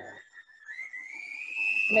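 Electric hand mixer beating a thick dough, its motor giving a high whine that struggles a bit under the load. About half a second in the whine rises in pitch as the mixer is sped up, then holds.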